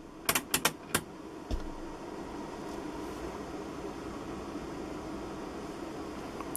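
A rotary band-selector switch clicking through its detents: about four quick clicks in the first second as the generator is switched up to the 28 MHz band. A steady faint hum follows.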